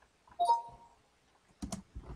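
Windows Speech Recognition's short two-tone chime about half a second in, signalling that the microphone has been switched on to listen.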